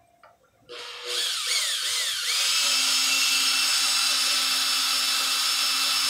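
Cordless drill driving a Time-Sert installer tool into a thread insert in an aluminum engine block. It starts under a second in, its motor pitch wavers up and down, then settles into a steady run. The pitch changes mark the stages of the install: the installer threading into the insert, then the insert threading into the block and locking in.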